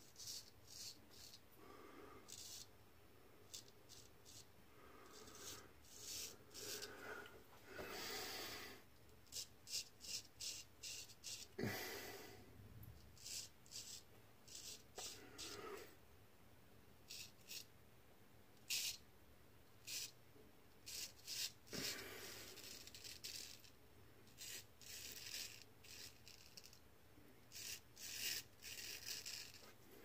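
Gold Dollar 66 straight razor scraping through lathered stubble in many short, faint, irregular strokes.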